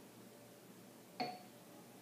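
A whisky tasting glass set down on a countertop: one sharp clink about a second in, with a brief glassy ring.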